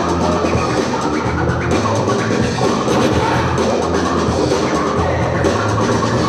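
Loud DJ-played hip hop break music with turntable scratching.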